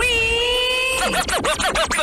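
DJ turntable scratching: a pitched sound swoops up and holds steady for about a second, then is dragged rapidly back and forth in quick up-and-down swoops.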